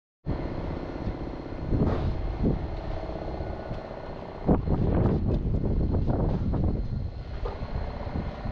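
An engine running steadily at an even pitch, with irregular knocks and clatter over it, the loudest about two seconds and four and a half seconds in.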